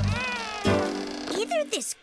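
Cartoon background music with a short meow-like vocal cry near the start, its pitch rising then falling.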